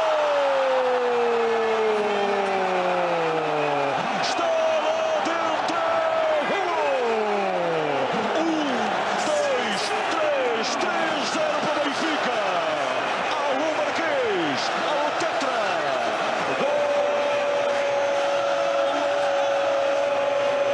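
Stadium crowd roaring in celebration of a goal, with a long goal cry from the TV commentator that falls in pitch over the first four seconds, followed by many shorter falling shouts. A single steady held tone sounds over the roar near the end.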